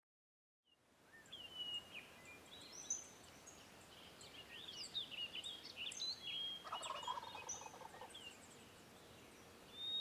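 Songbirds chirping throughout, with a wild turkey gobbling once a little past halfway, a rattling call lasting just over a second.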